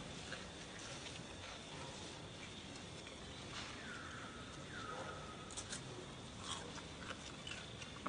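Quiet forest ambience with a faint steady high tone throughout. About three and a half seconds in come two short calls, each dropping in pitch and then held briefly, followed by a few sharp clicks.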